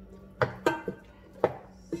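Raw beef bones knocking against the inside of a stainless steel Saladmaster stockpot as they are packed in: three sharp clunks, about half a second, two-thirds of a second and a second and a half in, the second with a brief metallic ring.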